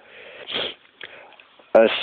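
A man sniffing, a short breath drawn in through the nose in a pause in his reading, about half a second in; his speech resumes near the end.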